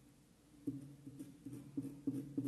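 Faint pencil strokes on fabric laid on a table: short repeated scrapes about three a second, beginning just under a second in.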